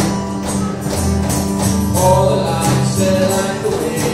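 Acoustic guitar strummed in a steady rhythm during a live song, with sung melody lines over it in the second half.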